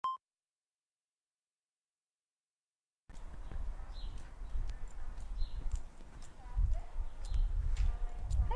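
A short beep, then about three seconds of dead silence, then low rumbling noise from a live-stream microphone outdoors, with scattered small clicks.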